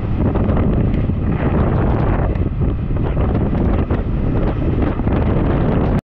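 Strong wind buffeting the microphone at the bow of a speeding motorboat, a steady loud rush with water splashing at the hull on choppy sea.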